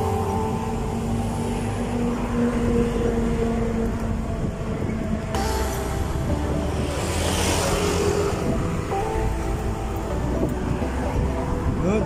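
Road traffic and wind rumble while moving along a city street, with background music playing over it; a louder rush of noise swells and fades near the middle.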